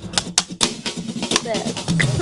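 Film clapperboards snapping shut in quick succession: a run of sharp, irregular claps about four a second that thins out after the first second and a half, over background music.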